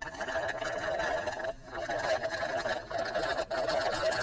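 A drink being sucked up through a plastic straw in long wet slurps, broken briefly about one and a half seconds in and again near the end.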